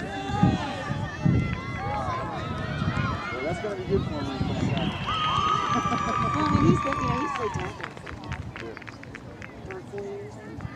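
Several voices of boys and an adult talking and calling out over one another, with one long drawn-out call about five seconds in and a few short clicks near the end.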